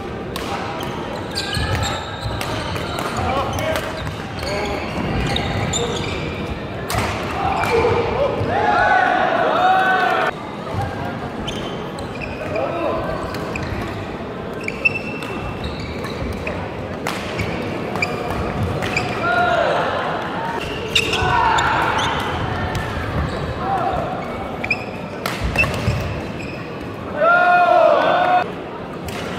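Badminton doubles rally in a large gym: sharp racket-on-shuttlecock hits and short squeaks of court shoes on the sports floor, the squeaks coming in clusters as the players move, with the hall's echo.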